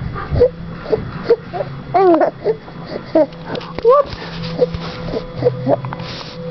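A young baby cooing and squeaking, a string of short sounds that rise and fall in pitch.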